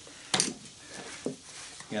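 A sharp metallic clink, then a fainter tap about a second later: a hand tool working at the sheet-steel housing of a small AC fan motor during teardown.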